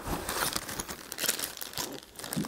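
Clear plastic bag crinkling as it is handled.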